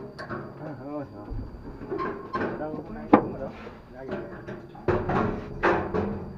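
People talking, with a sharp knock about three seconds in and two short thumps near the end.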